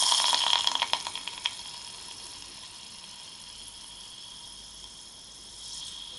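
Liquid nitrogen boiling around a green LED and its wire leads just dunked into it. It hisses loudly with rapid crackling for about the first second and a half, then settles to a steady, quieter hiss.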